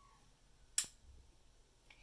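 A single sharp click about a second in, a lamp switch being flicked on to light a large compact fluorescent bulb; otherwise quiet room tone.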